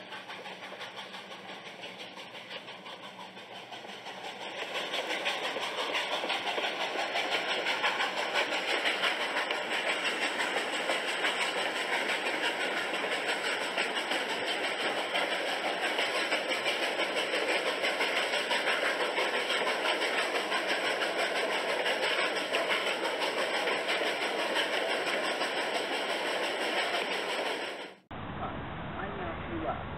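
A train running on the rails: a dense, steady rumble and clatter that grows louder about four seconds in, holds steady, and stops abruptly at the end.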